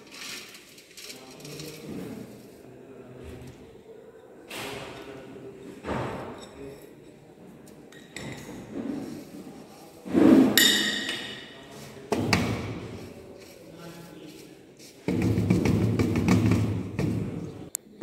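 Dried tablet granules pattering onto a brass wire-mesh sieve and rubbed across it by hand, with a sharp clink of a glass dish against metal about ten seconds in. From about fifteen seconds a metal spatula scrapes the granules steadily across the mesh.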